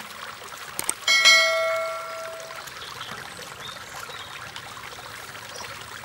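An enamelled metal lid set down on a cooking pot, clanking once about a second in and ringing like a bell as it fades over a second or so. Steady running water goes on underneath.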